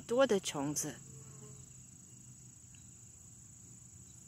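A voice speaks briefly in the first second. Under it and then alone, an insect in the garden makes one steady, high-pitched, unbroken trill.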